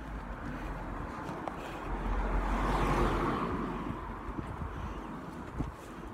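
A car driving past on the street, getting louder to a peak about halfway through and then fading away.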